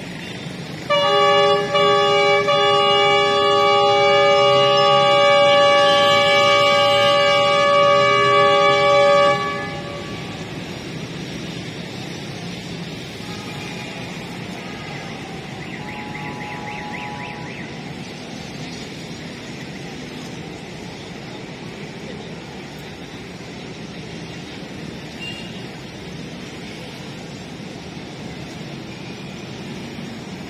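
ZCU-20 diesel-electric locomotive sounding its multi-tone air horn in one long blast of about eight seconds, starting about a second in. After it, the locomotive's engine runs with a steady low rumble as the train rolls slowly forward.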